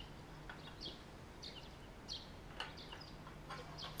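Small birds chirping faintly, short high chirps every half second or so, over a faint low steady hum.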